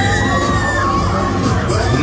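Riders on a spinning fairground thrill ride screaming together, several high voices sliding up and down at once, over loud fairground music with a steady bass.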